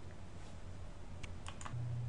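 A few faint clicks from a computer's input devices, close together past the middle, over low background noise; a low steady hum comes in near the end.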